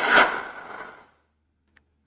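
A man's breathy, mouth-made explosion noise, the tail of his spoken "boom": a hiss that fades out about a second in and is followed by silence.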